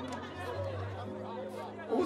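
Faint chatter of several people, with quiet background music holding steady low notes.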